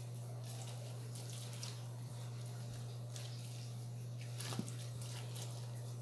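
Faint wet squishing and dripping as a red-fleshed orange half is twisted by hand on a plastic manual citrus juicer, over a steady low hum. There is a small click about four and a half seconds in.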